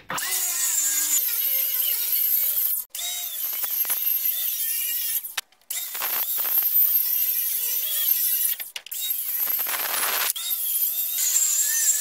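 Ryobi 18-volt cordless circular saw ripping through oriented strand board, its motor whine wavering as the blade cuts. It runs in several stretches that stop and start abruptly.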